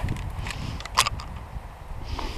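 Wind buffeting the microphone, with one sharp click about a second in from the shotgun being handled after a light primer strike.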